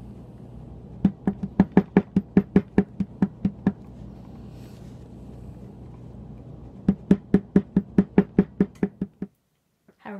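A small metal leather stamping tool tapped rapidly with a mallet to press down the background of a tooled design in damp leather: two quick runs of about fifteen sharp taps each, about six a second, with a pause of a few seconds between them.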